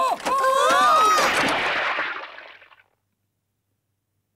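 Cartoon slapstick fall of an old man onto wet pavement: a wavering cry rising and falling, over a splash of water that fades out before three seconds in.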